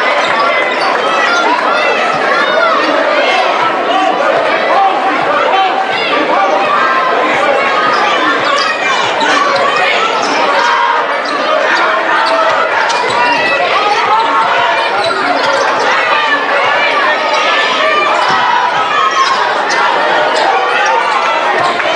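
Crowd chatter echoing through a gymnasium during a basketball game, with a basketball being dribbled on the hardwood court.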